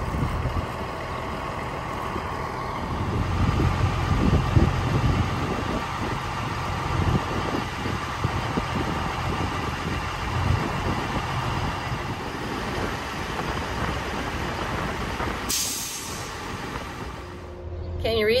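Diesel semi truck engine running, a steady low rumble that swells and eases, with a short hiss near the end.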